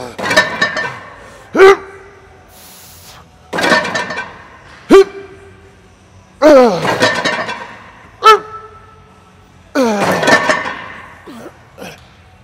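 A man grunting with strain on each press of a plate-loaded chest press machine, each grunt sliding down in pitch, about one rep every three seconds. Three times a sharp metal clank from the machine follows a grunt, ringing briefly.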